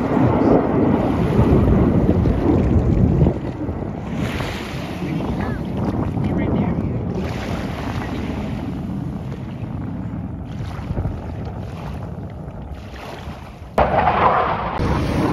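Wind buffeting the microphone over lapping surf at the water's edge. It is a low rush, loudest for the first three seconds, then easing off, with a sudden change of sound near the end.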